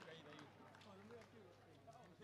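Near silence: faint distant voices over a steady low hum.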